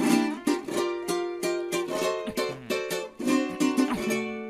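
Guitar playing a quick riff of plucked notes and chords, ending on a chord that rings out.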